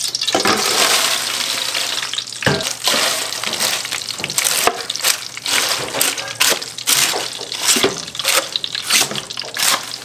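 Food hitting hot oil in a frying pan: a loud sizzle that flares at once and eases after a couple of seconds. Then a wooden spatula stirs and scrapes through it in strokes about twice a second, with the frying going on underneath.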